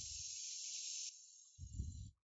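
Airbrush hissing steadily as it sprays paint, easing to a fainter hiss about a second in and dying away, followed by a brief low bump near the end.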